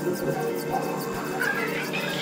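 Experimental electronic synthesizer music: layered steady drones with a run of clicks, and high wavering pitch glides entering in the second half.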